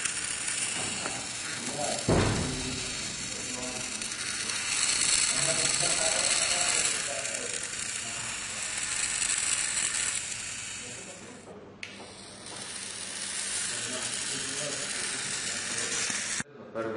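Small geared DC motors of a homemade line-following robot whirring, louder for several seconds in the middle and dropping away about twelve seconds in. A single knock about two seconds in.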